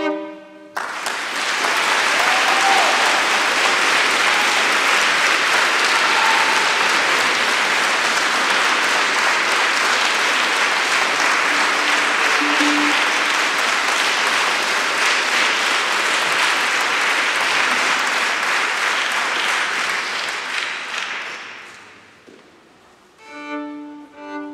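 A solo violin's final note cuts off about a second in, followed by sustained audience applause for about twenty seconds that fades away. Solo violin starts playing again near the end.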